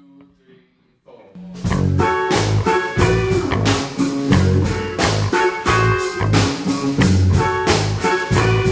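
Instrumental passage of a folktronica song: a quiet, sparse stretch of a few soft pitched notes, then about a second and a half in the full band comes in loud, with guitar over a steady drum beat and bass.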